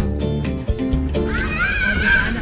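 Background music with plucked guitar-like notes, which gives way about a second in to a child's high-pitched, wavering squeal.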